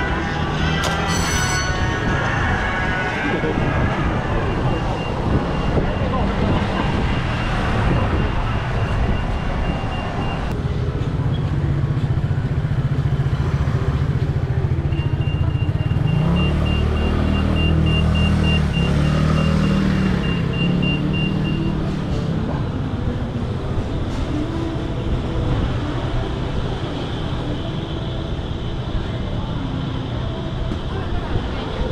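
Busy street ambience: passers-by talking, with vehicles running and passing; a vehicle's engine hum is strongest from about a third of the way in to about two thirds of the way through. A thin, high, steady tone sounds for several seconds at a time, twice.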